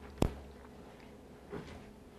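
Quiet studio room tone with a low hum, broken about a quarter second in by a single sharp click or knock, with a fainter soft rustle-like sound about one and a half seconds in.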